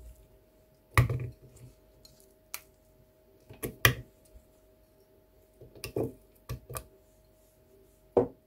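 Cucumber slices dropped into an empty plastic blender cup, landing as a series of short, irregular knocks and thuds about eight times, the loudest about a second in and near the middle.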